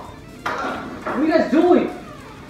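A person's voice crying out twice without words, each cry rising and then falling in pitch, just after a sudden sharp sound about a quarter of the way in.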